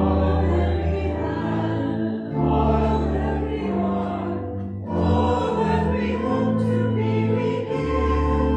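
Church hymn music: sustained chords in phrases a few seconds long, with voices singing.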